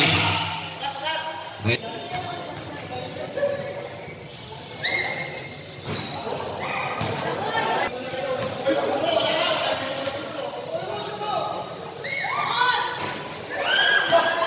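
Basketball game in an echoing gym hall: spectators' voices and shouts, a ball bouncing with a sharp thump about two seconds in, and several short high squeaks of sneakers on the court.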